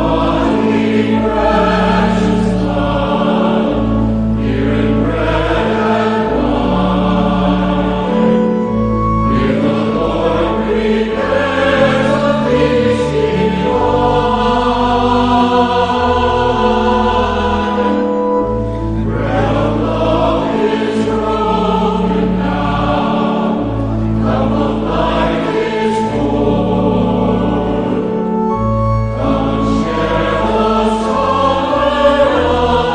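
A hymn sung by voices with organ accompaniment, in long sustained phrases that pause briefly about every ten seconds.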